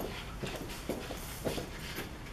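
Footsteps of a person in boots walking on a wooden floor, about two steps a second.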